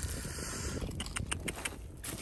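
A steady low rumble, with a few faint sharp clicks of loose stones being shifted between about one and two seconds in.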